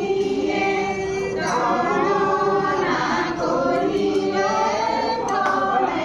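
A group of voices singing a Hindu devotional chant together (Assamese nam singing), in long held, slowly gliding notes.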